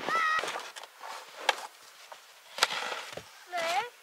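Wooden beehive boxes knocking as they are handled, with two sharp wooden knocks, one about a second and a half in and one about a second later.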